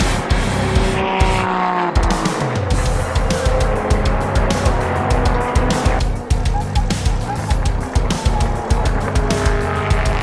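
GT racing car engines passing at speed, the engine note dropping in pitch a little after a second in, over backing music with a steady beat.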